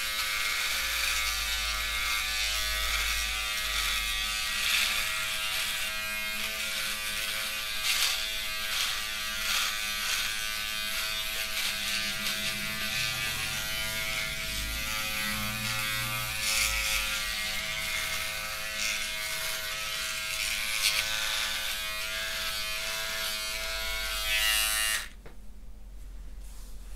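Kemei rechargeable electric foil shaver buzzing steadily as it is run over the jaw and neck, switched off about 25 seconds in.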